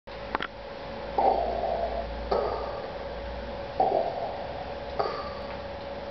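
A man imitating Darth Vader's breathing: two slow cycles of loud in-and-out breaths, each breath about a second long, over a steady faint hum. A short click comes just before the first breath.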